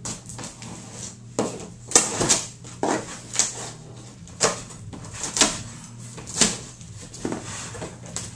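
Keys dragged along the packing tape of a cardboard box to slit it open: a run of short, sharp scraping and tearing strokes, roughly one a second.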